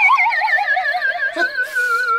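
A comic sound effect: a single high tone with a wide, fast wobble, sliding slowly downward in pitch like a theremin or synthesizer.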